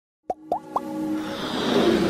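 Animated-logo intro sound effects: three quick rising pops about a quarter second apart, then a swell of electronic music that grows steadily louder.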